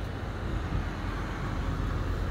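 Steady street traffic noise: a low, even rumble of road vehicles.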